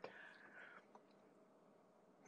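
Near silence: room tone, with a faint click at the start and a brief faint hiss in the first second.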